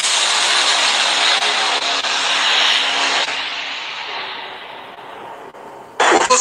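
A loud, steady rushing noise with a faint hum in it, played back through a phone's speaker. It fades away over the last three seconds, the high end going first.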